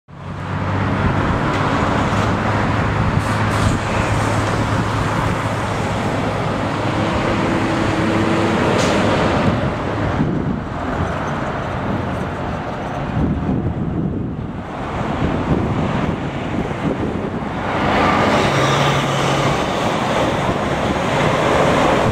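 Road traffic passing on a busy highway, swelling and fading as cars and trucks go by, with a low engine hum through the first several seconds.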